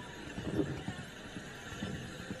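A line of horses standing and shifting on a dirt arena, with scattered irregular hoof knocks and horse sounds.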